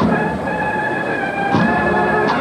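A processional march played by a band, with sustained wind chords and a drum strike at the start and another about a second and a half later.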